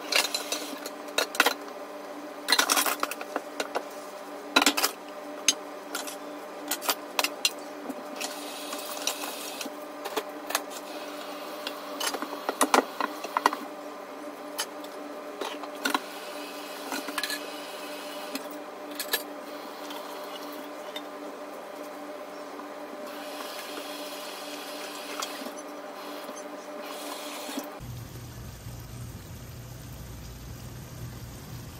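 Dishes and utensils clinking and knocking against each other and a stainless-steel sink as they are washed by hand, with the tap running in two short spells, over a steady hum. The clatter is busiest in the first half and cuts off shortly before the end.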